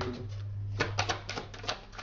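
A rapid run of sharp clicks lasting about a second, from tarot cards being handled, over a steady low hum.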